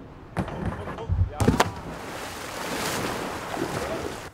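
A whitewater kayak launched down a wooden ramp: a scraping rush, two loud knocks about a second and a half in, then a long splash and rushing water as it lands in the river.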